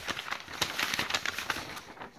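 Paper pages of an assembly instruction booklet rustling as they are flipped through: a quick run of crisp, crackly rustles.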